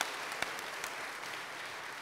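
Audience applauding: a steady patter of clapping with a few single louder claps standing out, easing off slightly toward the end.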